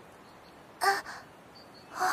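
A black bird cawing: one short call about a second in.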